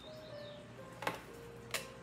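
Tarot cards being drawn from the deck and laid down on a wooden desk, with two sharp card taps, one about a second in and one near the end, over faint soft background music.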